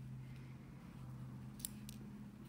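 Two light, quick clicks near the end, as a rhinestone pick-up pen works among crystals in a plastic tray, over a steady low hum.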